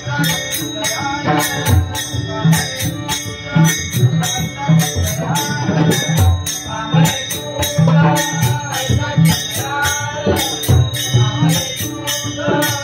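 Pakhawaj barrel drum played in a quick, steady rhythm, mixing deep bass strokes with sharp treble strokes, over continuous metallic jingling. It accompanies devotional bhajan singing.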